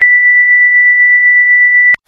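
A loud, steady, high-pitched electronic beep tone, a single pure tone held for about two seconds, starting abruptly and cutting off suddenly just before the end.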